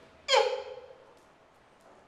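A man's short vocal exclamation that slides sharply down in pitch.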